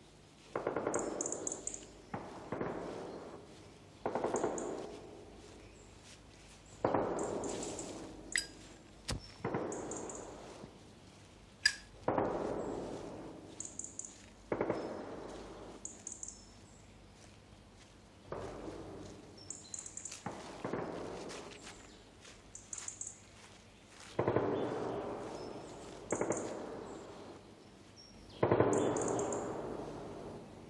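A series of sharp bangs, about a dozen at irregular intervals of roughly two seconds, each dying away in a long echoing tail.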